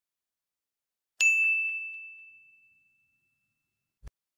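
A single bright bell ding, a notification-bell sound effect, struck about a second in and ringing out as it fades over about two seconds.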